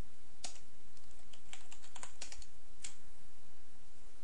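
Computer keyboard keys tapped in a short, irregular run of about eight separate keystrokes.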